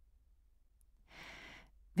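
A faint intake of breath, about a second in and lasting about half a second, in a pause between spoken sentences; otherwise near silence.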